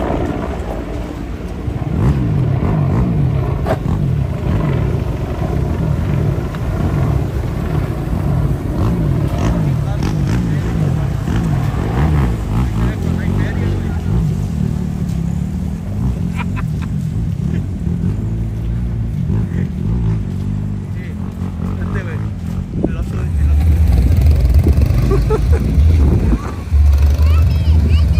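Low engine rumble of vehicles running, with indistinct voices in the background. The rumble gets louder in the last few seconds.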